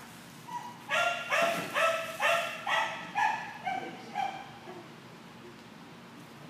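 A dog barking in a quick run of about eight high-pitched yipping barks, roughly two a second, trailing off about four seconds in.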